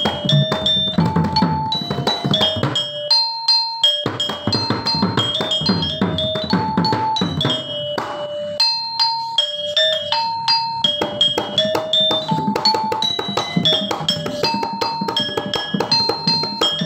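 Balinese gangsa, a bronze-keyed metallophone, struck with a hammer mallet in a quick repeating melody of ringing notes, over strokes on a kendang, the two-headed Balinese drum. The drum drops out for about a second around three seconds in and plays more sparsely around eight to ten seconds.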